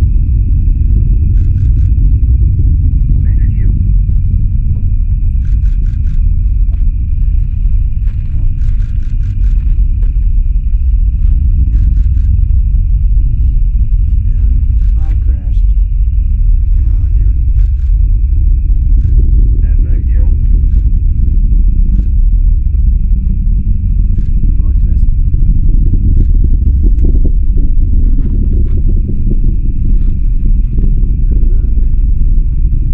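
Distant SpaceX Falcon 9 rocket launch: a loud, continuous low rumble from the engines' exhaust rolling in from afar, with a steady thin high-pitched whine on top.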